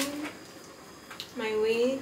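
A woman talking, with a pause of about a second in the middle.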